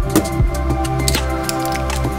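Background electronic music: sustained steady tones with a few sharp clicks.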